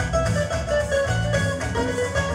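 Live Latin-style band music: a steelpan melody over strummed guitar and bass guitar, with a steady rhythm.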